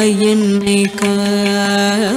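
A woman singing Carnatic vocal music, holding one long steady note with a short break for breath just before one second in, over a tanpura drone.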